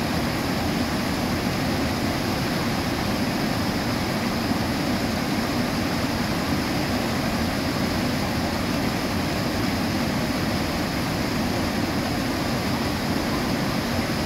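Steady rushing of water pouring over a concrete dam spillway into churning whitewater, an even, unbroken noise.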